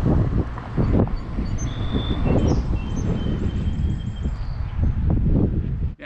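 Loud, gusty low rumble of wind on the microphone, with a few birds chirping faintly above it in the middle.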